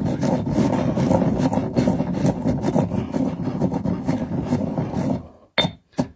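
Granite pestle grinding white rice around the inside of a new black granite Cole and Mason mortar: a steady, gritty scraping and crunching of rice grains against stone, which stops about five seconds in. The rice is being worked to a flour-like powder to season and seal the new stone.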